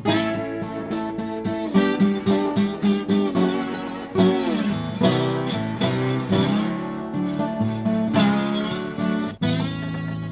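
Alvarez eight-string baritone acoustic guitar in open A tuning, with its two doubled middle strings, played by hand: low plucked notes repeating several times a second, and a few notes sliding down in pitch, played with a slide.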